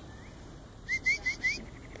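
A dog whining in short, high-pitched rising squeaks, four in quick succession about a second in, after a fainter one: an eager, excited whine.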